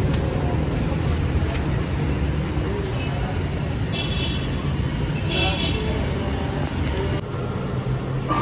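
Steady low engine rumble holding a constant pitch, dropping in level about seven seconds in.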